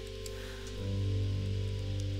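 Soft background music with sustained, held notes; a new chord comes in about a second in and it grows slightly louder.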